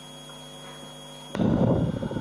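Steady electrical hum with a faint high whine in the audio feed. About a second and a half in, a sudden louder rumbling noise cuts in.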